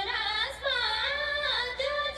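A woman singing a melody in a high voice, her pitch sliding between notes.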